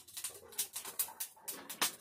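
Metal spatula scraping and stirring food in an iron kadai over a clay stove, in quick repeated strokes. A pigeon coos faintly.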